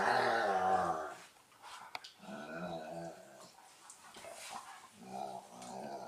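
Dogs growling while they wrestle in play, in three rumbling bouts, the first the loudest.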